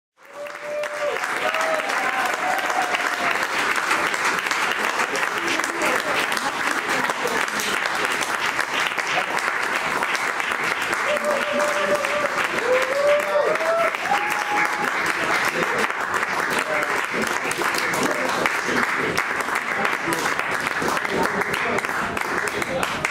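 Audience applauding and cheering, with short whoops rising above the clapping; it fades in over the first second.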